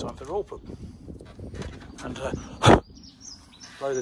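A short, loud puff of breath blown onto the camera's microphone to clear dust off it, about two-thirds of the way in. Faint bird chirps follow.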